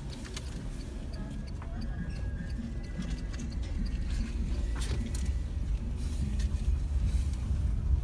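A car's engine and tyres give a steady low rumble, heard from inside the cabin as the car creeps along looking for a parking space, with a few faint clicks.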